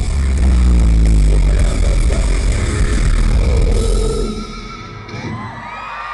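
A live rock band's closing chord, struck together with a drum hit at the very start and left ringing, dies away about four seconds in. A crowd then cheers and screams.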